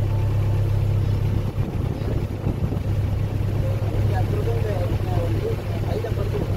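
Shikara boat's engine running steadily with a low, even hum as the boat moves along the water.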